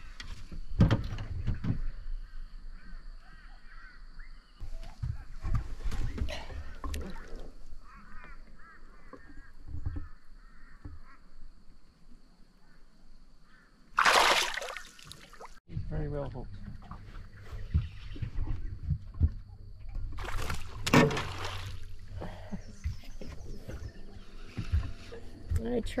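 A small barramundi splashing hard at the water's surface as it is let go beside the boat. This is the loudest sound, a brief rush of water about halfway through. Knocks and handling noise in the boat come around it.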